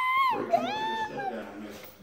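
Two high-pitched, meow-like cries, each rising and then falling in pitch: the first right at the start, the second about half a second in.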